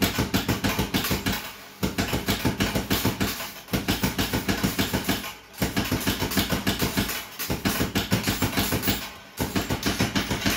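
ACE Swop Shop fruit machine's coin hopper paying out a win, coins clattering into the payout tray in rapid runs of about eight a second. Each run lasts under two seconds, with brief pauses between.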